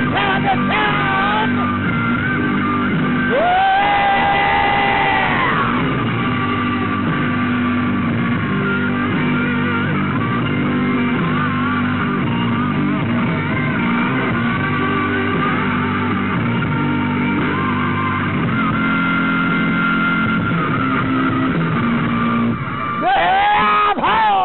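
Rock band music with no lyrics: an instrumental stretch over a steady beat, with a lead line of held, bending notes.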